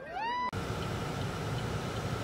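A high-pitched cry from a person, gliding upward, cut off about half a second in. It is followed by the steady low rumble inside a stopped car's cabin, with its engine idling and a faint constant hum.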